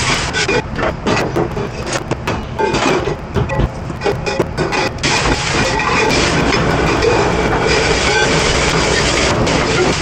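A commercial pre-rinse spray nozzle blasts water into stainless steel insert pots, and the pots clank as they are set down on the steel counter during the first half. From about five seconds in the spray runs as a steady hiss.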